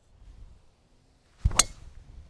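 A driver's clubhead strikes a teed golf ball about one and a half seconds in, with a single sharp, short crack of impact.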